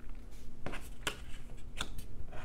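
Tarot cards being handled and slid across a tabletop: several short papery brushing and tapping sounds.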